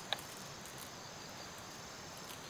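Steady high chirring of crickets and other insects, with a single sharp tap just after the start, from bamboo poles knocking together.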